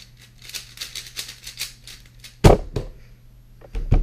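Quick, dense clicking of a 4x4 speedcube's layers being turned fast. About two and a half seconds in, a loud thump as the solve ends and the cube comes down on the mat. Near the end, several heavy thumps of hands hitting the timer and desk.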